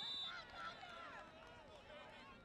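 A referee's whistle, a short steady shrill blast that stops about a third of a second in, over many overlapping voices of spectators and players.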